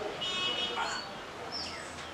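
High chirps like a small bird calling: a short buzzy high note about a quarter second in, then brief single chirps about a second in and near the end.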